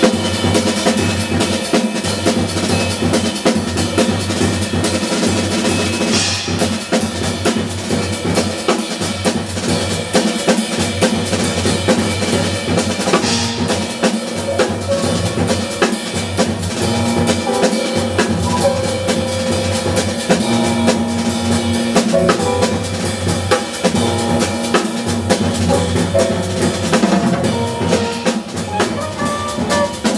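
Live jazz drum kit played busily, with snare, bass drum, rimshots and cymbals to the fore, under the rest of a small jazz band, the double bass among them.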